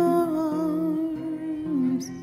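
Song with a single long, wavering vocal note, hummed or sung without words, over guitar accompaniment. The note drops in pitch near the end.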